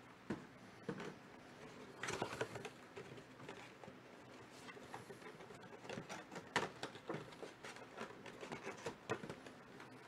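Faint handling noises: scattered light clicks, taps and rustles of small objects being moved about, busiest from about two seconds in.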